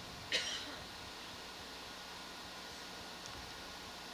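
Steady hiss with a faint low hum from an open microphone channel, with one short sharp noise about a third of a second in.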